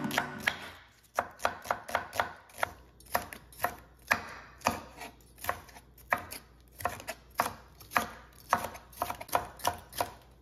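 Chef's knife slicing onion and bell peppers on an end-grain wooden cutting board: a steady run of sharp knocks, about two to three a second, as the blade meets the board. Acoustic guitar music fades out in the first second.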